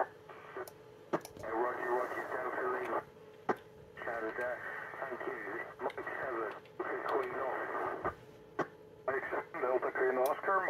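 ISS FM repeater downlink received on a Yaesu FT-847: narrow, tinny radio voices of stations calling through the repeater in several short overs, broken by brief gaps and sharp clicks.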